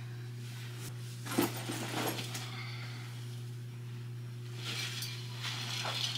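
Quiet room with a steady low hum, broken by a few light knocks and clinks about a second and a half in, again about two seconds in, and near the end, as bags, a water bottle and a drink cup are picked up and handled.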